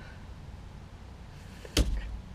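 Quiet car interior, then a single sharp knock near the end.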